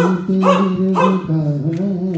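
A man's voice holding long sung notes in a devotional chant, with short sharp vocal cries breaking in three times, about half a second apart, in the first second.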